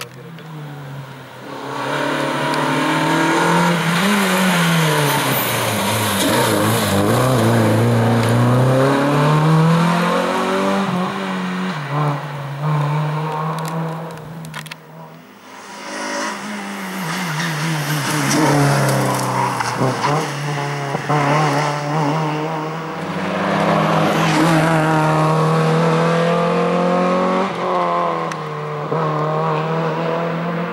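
Renault Clio Cup race car's engine revving hard as it passes. Its pitch climbs through each gear and drops at the shifts and when braking for bends. The sound falls away briefly about halfway through, then a second pass follows.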